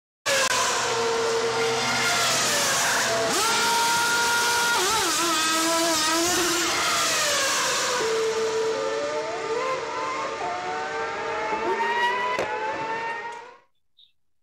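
Formula 1 car engines at high revs, the pitch of each engine note rising and dropping with throttle and gear changes, in several short clips cut together. It fades out just before the end.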